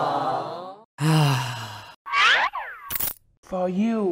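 A string of short cartoon sound effects and wordless vocal sounds: a wavering voice-like tone, a falling groan-like sound, a quick glide up and down, and a sharp click about three seconds in.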